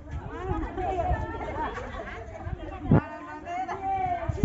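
Several people chatting and talking over one another, with one sharp knock about three seconds in.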